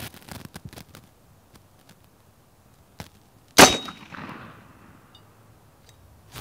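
A single shot from an AirForce Texan .45-caliber big-bore precharged air rifle: one sharp crack about three and a half seconds in, fading over about a second. Faint handling clicks come before it.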